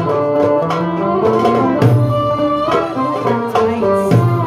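Live Middle Eastern ensemble music for belly dance: violin and oud play the melody over a steady rhythm on the Arabic tabla (goblet drum) and frame drum.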